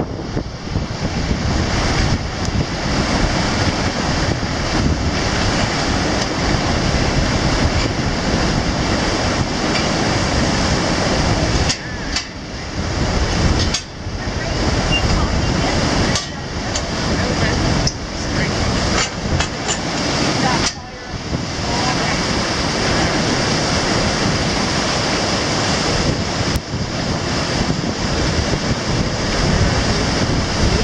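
Wind on the microphone over river water rushing along the hull of a reaction cable ferry, a steady, dense noise with a few brief lulls midway.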